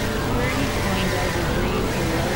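Dense experimental sound collage of several recordings layered at once: a continuous rumbling, engine-like wash with wavering, gliding tones running through it.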